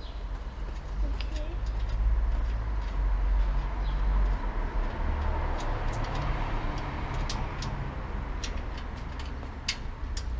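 Street noise: a low traffic rumble that swells for a few seconds as a vehicle passes and then eases off, with scattered light clicks.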